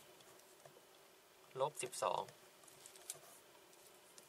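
Pen scratching on paper in faint, short strokes while figures are written, with a brief spoken phrase about a second and a half in.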